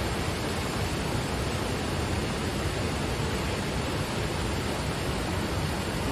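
The Khlong Phlu waterfall's falling water, a steady, even rushing noise.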